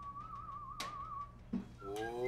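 A person whistling one long note with an even wavering vibrato, which stops about a second and a half in. A sharp click comes near the middle, and a voice starts near the end.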